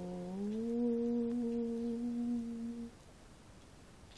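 A woman humming with her lips closed: a low held note that slides up to a higher one about half a second in, held steadily, then stops about three seconds in.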